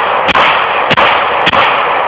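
Two semi-automatic pistols fired in quick succession, one in each hand: three sharp shots a little over half a second apart, with a loud continuous noise filling the gaps between them.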